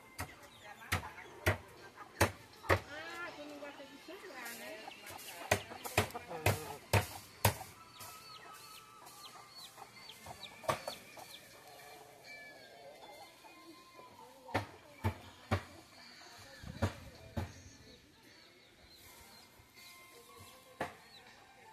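Free-range chickens in a backyard, hens clucking and chicks giving small high cheeps, with a pitched call early on and clusters of sharp knocks throughout.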